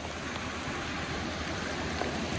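Steady rushing noise of a flood-swollen creek running fast and high, like rapids.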